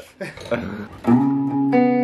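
Semi-hollow-body electric guitar: a chord struck about a second in and left ringing, with more notes added over it near the end.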